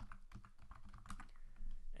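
Computer keyboard typing: a quick, uneven run of key clicks as a command is typed and entered.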